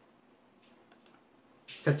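A pause between a man's spoken sentences: near silence with two faint, short clicks about a second in, then a brief rush of breath as his voice comes back just before the end.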